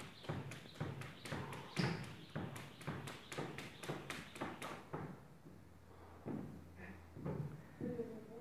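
A quick, even series of light taps or knocks, about three a second, stopping about five seconds in.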